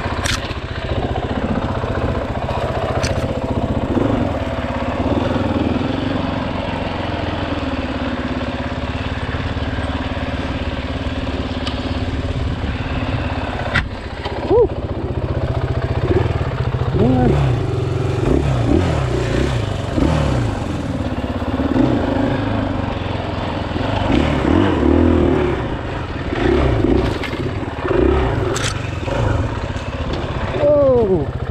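KTM 500 EXC-F dirt bike's single-cylinder four-stroke engine running at low speed, its pitch rising and falling again and again with the throttle from about halfway through. A few sharp clicks stand out over the engine.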